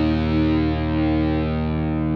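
Outro music: one held, distorted electric guitar chord ringing out, its upper tones slowly fading.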